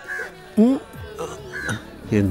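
Crows cawing a few short times over soft background music, the loudest call about half a second in.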